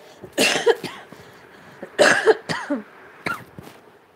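A person coughing: two loud coughs about a second and a half apart, then a smaller one.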